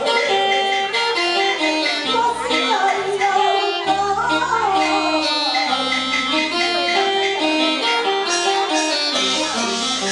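Taiwanese opera (gezaixi) aria sung into a microphone by a female performer, over instrumental accompaniment with bass notes stepping about once a second.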